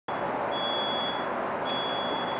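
High-pitched electronic beeping, each beep about three-quarters of a second long and repeating roughly once a second, over a steady background rumble.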